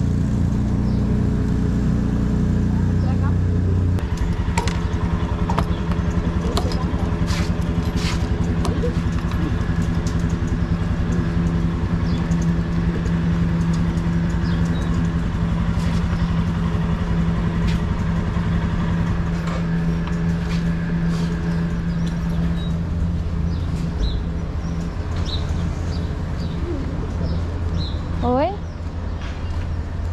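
Motorcycle engine idling at a fuel station: a steady low drone that holds its pitch. A few sharp clicks and knocks come a few seconds in.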